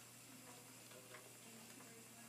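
Faint, soft ticking from two wooden treadle spinning wheels turning as wool is spun.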